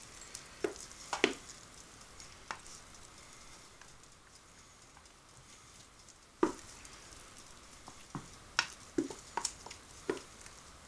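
Spatula scraping thick batter out of a metal mixing bowl into a metal loaf pan: scattered scrapes and clicks, with the loudest knock about six seconds in and several more near the end.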